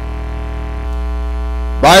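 Steady electrical mains hum in the microphone and sound-system feed, a low buzz that gets slightly louder about a second in. A man's voice starts a word near the end.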